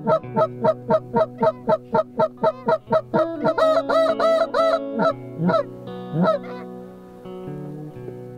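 Canada goose call blown by a hunter in a fast, even run of honks, about four or five a second, then a few longer drawn-out honks and two scattered single ones, fading out about two-thirds of the way in. Background music with steady tones runs underneath.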